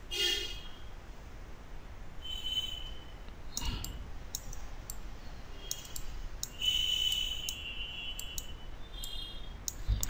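Scattered single computer mouse clicks, a dozen or so spread unevenly, with a faint high-pitched tone about two-thirds of the way through.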